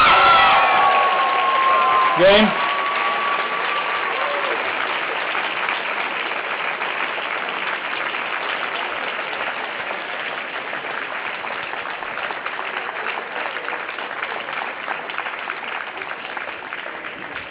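Loud shouts as the match-winning point is won, then steady applause from the crowd, which runs on to the end.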